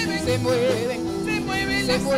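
Live worship band music: women singing a melody with a wavering vibrato over electric guitar, bass guitar, keyboard and drums.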